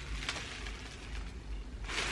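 Faint rustling and handling noise of a disc-bound paper notebook held open and tilted, its pages shifting.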